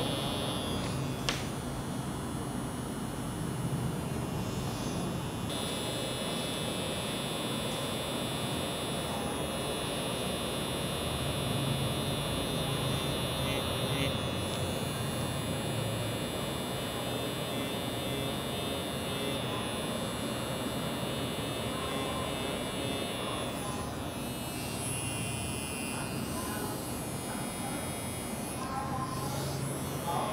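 Permanent makeup machine pen buzzing steadily while its needle draws hairstroke eyebrow lines on practice skin, a constant motor hum with a high whine whose pitch shifts slightly a few times.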